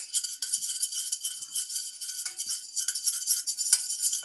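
A spoon stirring oil and turmeric in a stainless-steel saucepan, scraping and clinking against the pan in a fast, continuous rattle.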